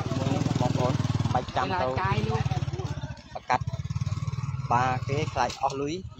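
A small engine running steadily as a low, even pulsing rumble, with a man's voice talking over it; the engine sound drops out briefly a little past the halfway point.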